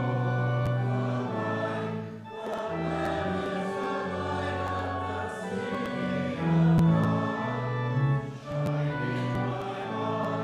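A congregation singing a hymn together with instrumental accompaniment, in held notes that move at a steady hymn pace over a low bass line.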